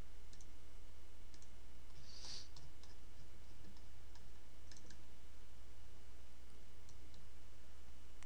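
Computer mouse clicks, a few scattered single and double clicks, over a steady low hum on the microphone, with a brief soft hiss about two seconds in.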